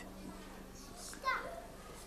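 Faint chatter of young children in a studio audience, with one child's short call about a second in, over a low steady hum.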